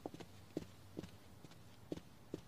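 Faint footsteps clicking on a hard floor: several separate steps at an uneven pace.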